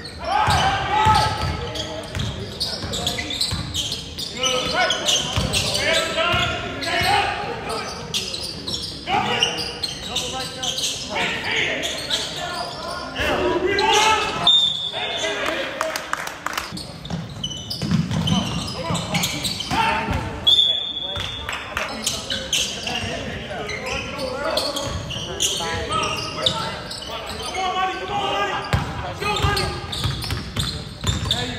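A basketball being dribbled on a hardwood court in an echoing gym, amid the voices of players and spectators, with a couple of brief high squeaks.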